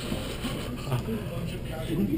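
Indistinct background voices and room noise, with no clear words.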